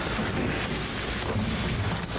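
Steady rushing noise, like wind on a microphone, picked up by the meeting-room microphones, with no clear single event.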